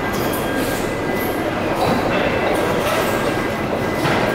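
Steady, loud background din of a busy indoor market hall, a dense rumble with no clear single event and a thin steady high tone running through it.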